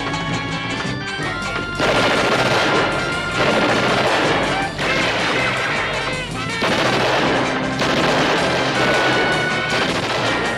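Orchestral TV score, then from about two seconds in, long bursts of rapid automatic gunfire over the music, in stretches of one to two seconds with short breaks.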